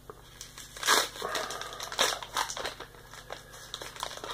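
Foil wrapper of a Pokémon TCG booster pack crinkling as it is handled and torn open, a run of crackly rustles, the loudest about a second in and again about two seconds in.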